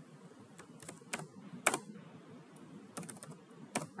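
Computer keyboard being typed: an irregular run of key clicks that starts about half a second in, one stroke louder than the rest.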